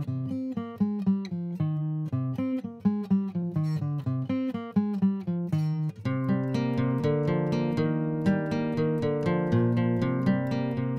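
Intro music on acoustic guitar: a line of plucked notes that turns fuller, with held chords, about six seconds in.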